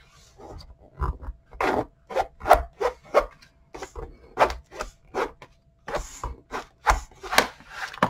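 A plastic spatula scraping across cardstock in short repeated strokes, about two a second, burnishing glued hinge strips flat so the wet adhesive spreads and bonds.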